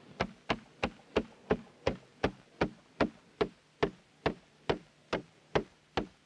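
A regular series of sharp, short knocks. They start at about three a second and slow steadily to a little over two a second, each about equally loud.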